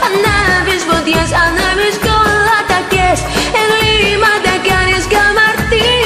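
A woman singing a Greek-language pop song over a backing track with a steady beat and a pulsing bass.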